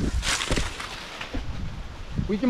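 Dry banana leaves rustling loudly against the microphone in a short burst about a quarter second in, then softer rustling, over a low rumble of wind and handling on the microphone.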